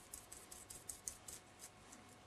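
Faint quick taps and scratches of a small paintbrush dabbing white acrylic paint onto a plastic acetate sheet, several a second, fading out near the end.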